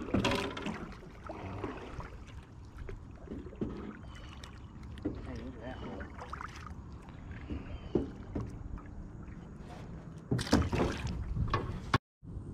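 Water and handling noise around a small fishing boat, with scattered light knocks and clicks. A louder cluster of knocks comes about ten and a half seconds in.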